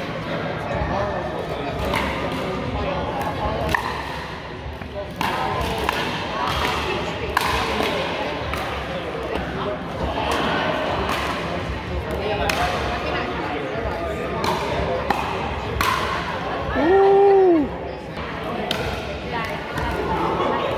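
Pickleball paddles striking the plastic ball, with bounces on the hardwood floor of an echoing gym, a hit every second or two over voices from nearby courts. Near the end, a loud tone about a second long rises and then falls.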